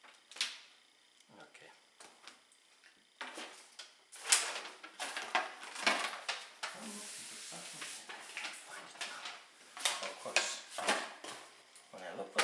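A large paper instruction leaflet and a cardboard box being handled: a single click early, then from about three seconds in, several seconds of continuous crinkling and rustling.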